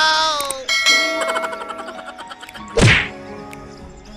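Edited-in sound effects: about a second in, a bright ding of several ringing tones sounds and fades, followed near the end by a short whoosh.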